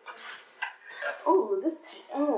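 A spoon clinking and scraping against a glass bowl in a quick run of short strokes, as food is eaten from it. About a second and a half in, a woman's voice comes in.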